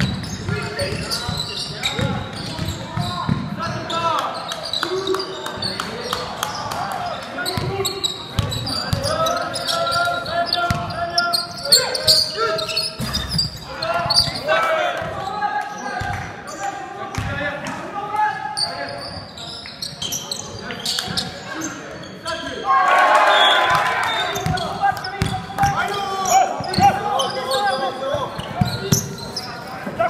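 Basketball bouncing on a hardwood gym floor during play, with players' and spectators' voices echoing in a large hall. The voices swell into a louder burst of shouting about two-thirds of the way in.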